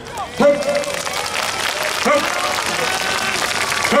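Crowd applauding. Short shouted calls rise out of it about half a second in, around two seconds in, and near the end.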